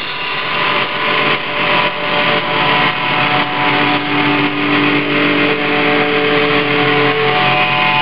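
Loud live rock band: drum kit keeping a steady beat under electric guitar, with long held notes from about three seconds in until near the end.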